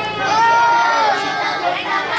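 A group of children's voices: one high voice calls out a single long drawn-out word near the start, over the chatter of the group.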